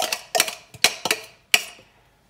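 A metal spoon knocking against a bowl, about half a dozen sharp clicks with short ringing in the first second and a half.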